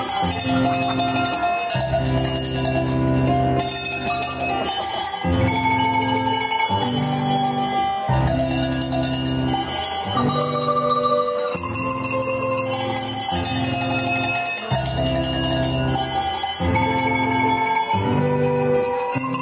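Hand bells of different pitches rung by a group of amateurs one after another on cue, making up a tune over accompanying music with a steady beat.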